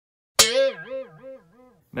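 A cartoon-style 'boing' sound effect: a sudden springy twang about half a second in, its pitch wobbling up and down several times as it fades out over about a second and a half.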